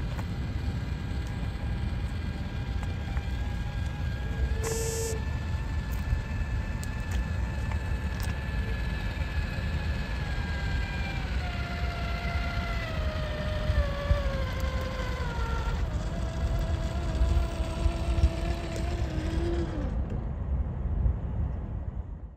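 Electric whine of an RC crawler's Hobbywing Fusion Pro brushless motor as the truck creeps over asphalt over a steady low rumble. The whine steps down in pitch midway, holds steady for a few seconds, and the sound cuts off near the end.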